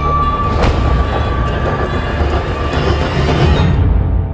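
Film-trailer music and sound design: a dense low rumble under a held high tone that lasts about two and a half seconds, with a sharp hit about half a second in.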